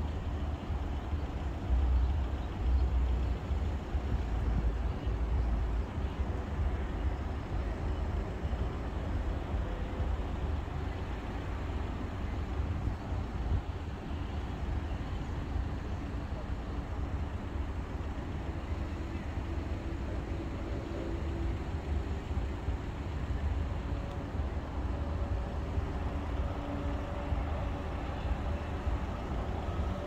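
Steady hum of distant road traffic, with a gusting low rumble of wind on the microphone that is strongest in the first few seconds.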